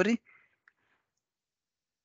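The end of a spoken word, then near silence with one faint click about two-thirds of a second in.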